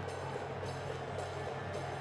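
Steady crowd noise of a football match broadcast under background music with a regular beat, about two beats a second.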